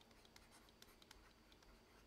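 Near silence with faint ticks and light scratches of a stylus writing by hand on a tablet screen.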